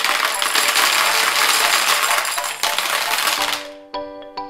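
Yellow Smarties candy-coated chocolates poured from a glass bowl into a plastic toy bathtub, a dense rattling clatter of many small hard pieces hitting plastic and each other that tails off about three and a half seconds in.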